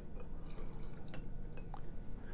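Rum poured into a jar of ice: faint dripping with a few small, sharp ticks.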